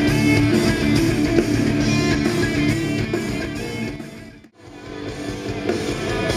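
Heavy metal band playing live, with electric guitars and drums. The music fades out about four seconds in and fades back in just after.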